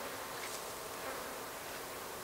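Faint, steady buzzing of flying insects in the garden air.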